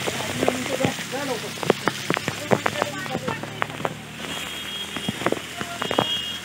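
Small waterfall splashing onto rocks close by: a steady rush of falling water broken by many sharp droplet splashes.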